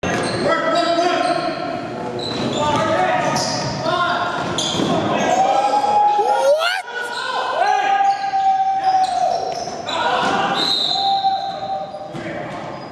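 Live basketball game sound in a gym hall: a ball bouncing on the hardwood floor amid players' raised voices, echoing in the large room.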